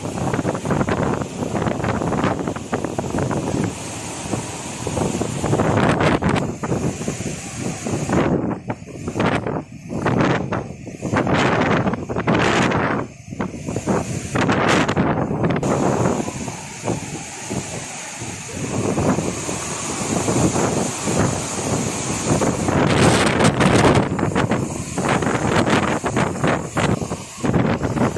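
Cyclone wind gusting hard against the microphone in uneven gusts, with several brief lulls partway through.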